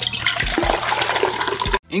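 Loud, steady rushing of a large volume of water pouring over a dam spillway, cut off abruptly near the end.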